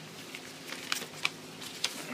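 Soft rustling of paper with a few short, sharp clicks as a card and note are handled and drawn out of an envelope.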